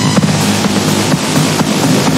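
Minimal techno mix with a hissing noise wash swelling in at the start, over a kick beat that drops back.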